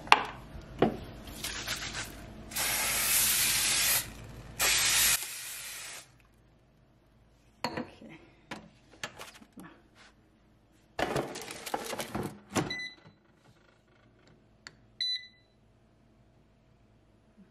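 Cooking oil sprayed onto samosas in an air fryer basket: a longer hiss of spray, then a short one. Then a few knocks and rattles as the basket is handled, and two short electronic beeps from the air fryer's touch panel near the end.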